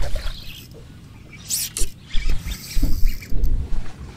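Wind buffeting the microphone in uneven gusts of low rumble, with a few light clicks and one short high squeak about one and a half seconds in.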